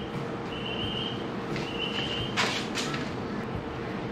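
Handling noise from the throttle lock and its packaging: a brief rustle about two and a half seconds in, over a steady low background hum with two short, high, steady tones.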